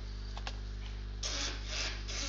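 A couple of faint clicks, then about a second in three short scraping or rubbing noises in quick succession, over a steady low electrical hum.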